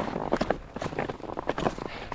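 Skis scraping and crunching on firm snow as the skier shuffles and edges into position, a string of short, irregular scrapes.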